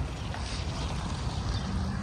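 John Deere 6250R tractor's engine running steadily at low revs as it drives slowly up, with wind noise on the microphone over it.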